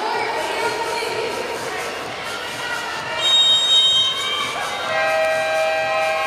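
Arena crowd noise after a volleyball point, with a referee's whistle blown about three seconds in. About five seconds in a long electronic buzzer sounds and runs on: the signal for a team timeout request.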